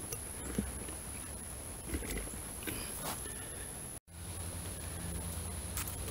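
Small campfire of dry twigs and sticks burning, with a few faint crackles and pops over a low steady background. The sound drops out for an instant about four seconds in.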